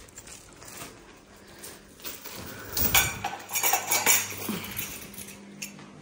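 Metal chain strap of a handbag clinking and rattling as the bag is carried, in a short run of clinks about halfway through.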